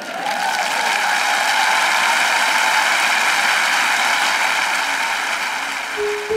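A large auditorium audience applauding steadily.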